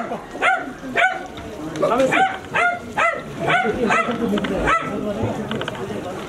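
A dog barking over and over at a steady pace, about two barks a second, stopping about five seconds in.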